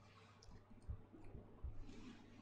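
Faint computer mouse clicks and a few soft low thumps over a steady low hum.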